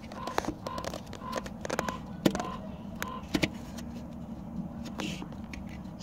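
Scattered light clicks and taps of fingers working a plastic reverse-cable lock fitting loose from its housing, over a steady low background hum.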